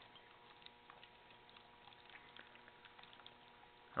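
Faint, irregular bubbling and crackling from a Smack's booster HHO electrolyzer cell making hydroxy gas in its electrolyte bath, over a faint steady hum.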